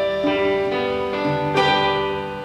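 Acoustic guitar and electronic keyboard playing an instrumental duet: piano-toned notes held over plucked guitar, with new notes struck about every half second.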